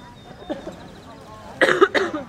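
A person coughing: a short, loud, harsh cough near the end, followed by a smaller second one.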